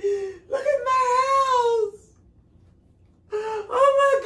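A woman wailing emotionally: a short cry, then a long drawn-out wail that rises and falls, and a second long wail starting near the end.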